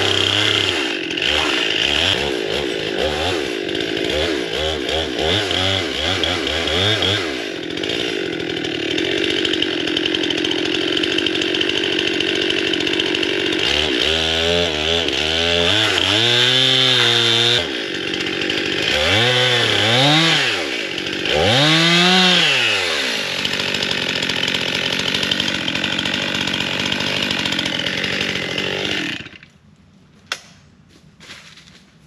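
Two-stroke chainsaw cutting into the trunk of a standing tree, mostly running steadily under load. Around the middle the revs rise and fall several times, and it shuts off just before the end.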